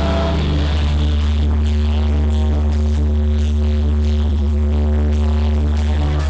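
Live rock band playing through a concert PA, recorded from the crowd, the heavy bass booming and distorting the recording. Long held notes ride over a steady low pulse about twice a second.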